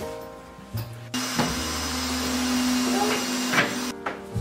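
Background music for about a second, then a small electric motor running at a steady pitch with a constant hum and hiss for nearly three seconds, with a couple of light knocks, cut off just before the music comes back.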